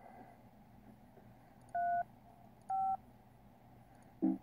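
Two touch-tone telephone keypad beeps, each short and about a second apart: digits being dialled to place a call.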